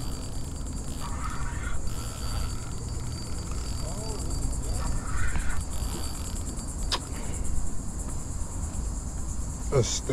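Steady high-pitched drone of insects over a low background rumble, with one sharp click about seven seconds in.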